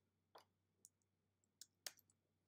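Near silence with a few short, faint clicks spread through it, the last two close together near the end.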